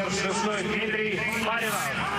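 A man's voice speaking: television football commentary over a steady background.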